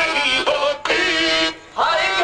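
Live qawwali: a male voice sings long, wavering, drawn-out notes over a harmonium, with a brief break in the sound about one and a half seconds in.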